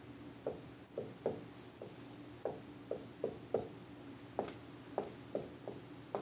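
Dry-erase marker drawing on a whiteboard: about a dozen short, irregular strokes, squeaks and taps of the felt tip against the board.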